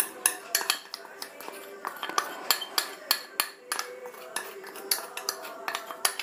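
Spoon knocking and scraping against a plastic cup as cornflour is tapped out into a stainless steel bowl: a string of light, irregular clicks and clinks.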